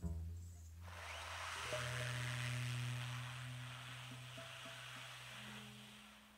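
Sparse, quiet jazz-quintet passage: a low double bass note rings out, then a soft hissing wash swells in about a second in and a single low note is held steady for about four seconds.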